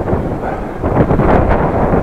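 Wind buffeting the microphone of a camera on a moving bicycle: a loud, uneven noise, strongest in the low end and rising and falling in strength.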